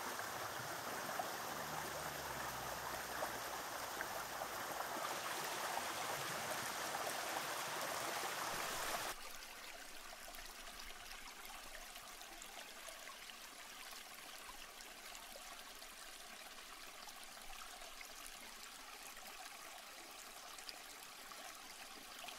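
A shallow rocky creek running, a steady rush of water. About nine seconds in it drops abruptly to a softer, even flow.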